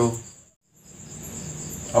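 Crickets trilling with a steady high-pitched tone in the background, heard under a man's voice that trails off at the start, then through a quiet stretch after a brief moment of dead silence.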